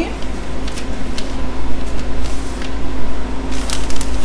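Sheet of butcher paper rustling as it is handled and laid over a hat, a few short crisp rustles with the loudest cluster near the end, over a steady low hum.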